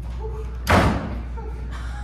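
A door slamming once, a single loud bang a little under a second in.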